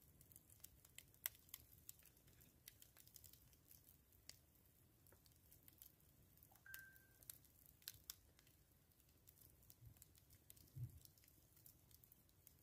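Very faint crackling of a wood fire burning in a fire bowl: scattered soft pops and clicks. There is a brief high tone about seven seconds in and a low thump near the end.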